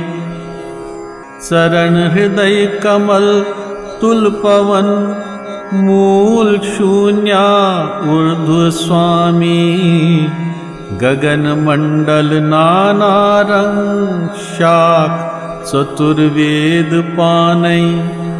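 Male voice singing a Kashmiri devotional vaakh to music, a slow melody with long gliding notes.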